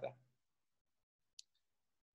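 Near silence, broken by a single faint, short click about one and a half seconds in.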